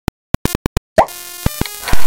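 Cartoon intro jingle: a quick run of short clicks, then about a second in a rising pop, followed by a bright held electronic chord with percussive hits, the loudest hit right at the end.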